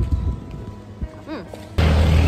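A few low thumps, typical of wind or handling on a phone's microphone, over quiet street ambience, with a brief hummed "mm". Near the end the sound cuts suddenly to much louder background music with a heavy low end.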